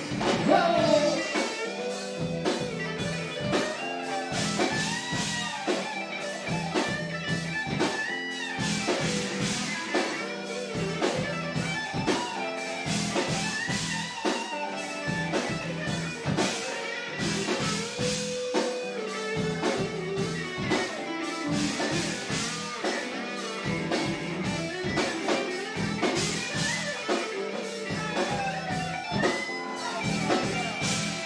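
Live band playing blues-rock, with electric guitar lines bending over a steady drum beat.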